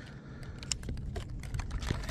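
Planer board being handled: a scatter of small, sharp clicks as the wire line clip is worked by hand and the foam board is gripped, over a low rumble.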